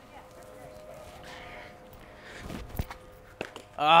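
A hollow plastic Blitzball bat knocks once against a plastic Blitzball, a single sharp crack near the end of a quiet stretch, followed by a couple of small clicks.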